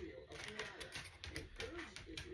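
Faint clicks and light rustling of a wax bar in its plastic packaging being handled.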